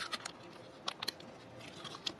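Faint chewing and mouth clicks from eating a Reese's Mallow Top peanut butter cup: a few soft, short clicks near the start, a pair near the middle and one near the end.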